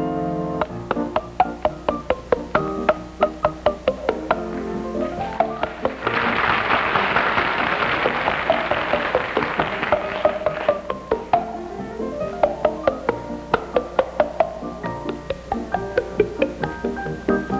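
A tune played as a fast run of pitched pops, made by a man slapping his cupped hands against his mouth and cheeks, the notes changing pitch like a wood block. Midway, a hissing noise swells under the pops for about five seconds.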